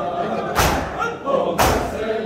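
A crowd of mourners beating their chests in unison with open hands (matam), a loud group slap about once a second, twice here. Chanting voices carry on between the strikes.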